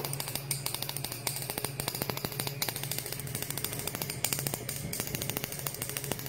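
Homemade high-voltage ambient power module sparking: a fast, irregular run of small sharp snaps from electrical discharge over a steady low hum.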